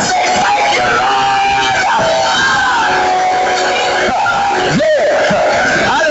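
A preacher shouting and chanting in drawn-out, sung tones, the climax style of Black church preaching, over steady held musical notes; his voice swoops sharply upward near the end.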